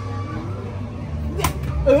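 A thrown ball strikes the back of a carnival ball-toss booth with one sharp hit about one and a half seconds in, a miss that knocks down none of the target blocks.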